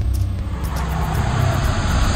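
A loud, deep rumble with a hiss that swells up about halfway through: a whooshing sound effect laid under the opening title. Faint regular ticks run high above it.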